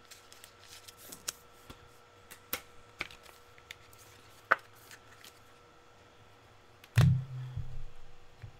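Trading cards being handled on a table: scattered light clicks and snaps of cards, with a louder low thump about seven seconds in.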